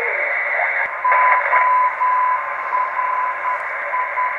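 Shortwave receiver audio from a uBitx tuned across the 80 m band in sideband mode: a steady hiss with a whistle near 1 kHz that starts about a second in and keeps cutting in and out. The whistle is interference from AM broadcast stations leaking through a receiver that has no high-pass filter on its antenna input.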